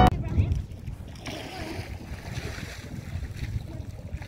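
Outdoor ambience with wind buffeting a phone microphone: an uneven low rumble under a soft hiss.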